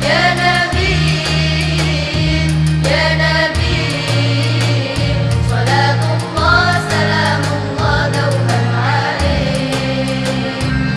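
Female nasyid choir singing an Arabic devotional song together into microphones, over sustained low accompaniment notes that shift every second or two.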